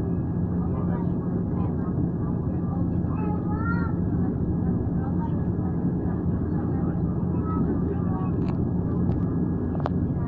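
Passenger train running over a steel bridge, heard from inside the carriage: a steady rumble with a constant low hum, and a few sharp clicks near the end. Faint voices of people talking can be heard under it.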